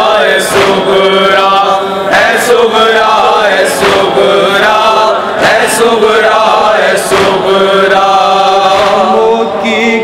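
A crowd of men chanting a noha, the Shia lament for Husain, together in long held notes, with sharp chest-beating slaps (matam) about every one and a half seconds.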